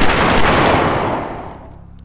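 Pistol gunfire: a sudden burst of shots, loudest in the first half second, ringing out and dying away over about a second and a half.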